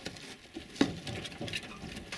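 Handling noise on the camera: irregular light taps and rustles close to the microphone, with one sharper knock a little under a second in.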